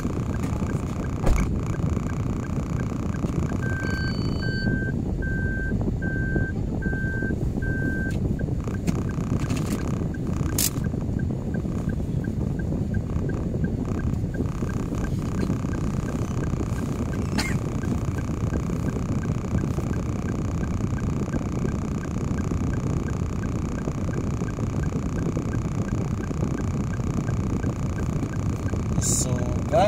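Steady low rumble of a stationary car idling, heard from inside the cabin, with a faint regular ticking running through it. About four seconds in comes a string of about five short beeps, a second apart, and a couple of sharp clicks follow later.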